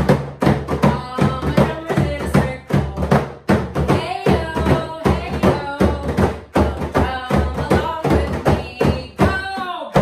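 Hand drums, a large frame drum and a smaller hand drum, struck with the hands in a quick steady beat of about four strokes a second, with voices singing a call-and-response drumming chant over them.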